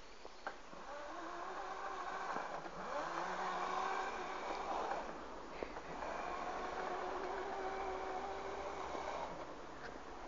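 Electric motor of a 24 V Razor mini moto whining as it spins up, climbing in pitch and then holding steady for about four seconds. It cuts out just after the middle, then spins up again and runs steadily for another three and a half seconds before dropping away near the end.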